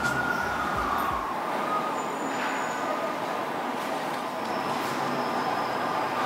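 Street traffic noise with an emergency vehicle's siren wailing, its long tone falling away about a second in; steady traffic noise continues.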